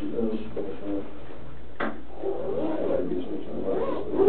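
Muffled, indistinct voices, too unclear to make out words, with one sharp knock or click about two seconds in.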